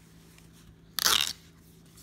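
A stiff cardboard scratch-off lottery ticket being torn off its strip along the perforation: one short, crisp tear about a second in.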